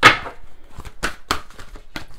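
A deck of playing cards handled over a wooden table: one loud knock at the start, then a few lighter sharp clicks and taps of the cards.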